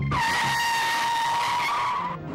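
Car tyres screeching in a long skid, a steady high-pitched squeal lasting about two seconds that starts abruptly and cuts off at the end.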